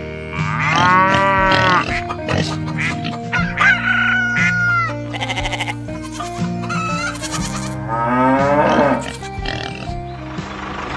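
Farm-animal sound effects, bleating among them, laid over background music. Wavering calls come about a second in, around four seconds in, and again near the end.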